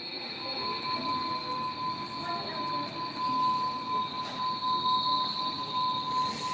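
Sustained, steady high-pitched tones over a faint hiss. A second, lower steady tone comes in about half a second in and holds.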